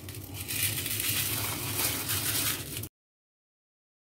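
Washed, drained rice grains poured from a plastic colander into a pot of water, a steady hiss of grains sliding and pattering in. It cuts off suddenly about three seconds in, and dead silence follows.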